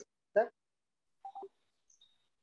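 A man's voice over an online video call saying the single word 'sir?', then near-total silence broken about a second later by a faint, short tone-like blip.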